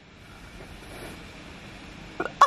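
Birthday candles being blown out: a steady, airy breath hiss lasting about two seconds.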